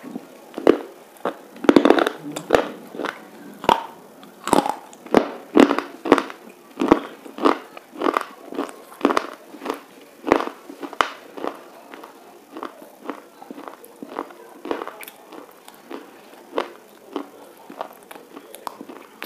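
Close-up crunching of a hard white bar being bitten and chewed: sharp crunches about two a second, loudest in the first ten seconds and growing fainter as the pieces are chewed down.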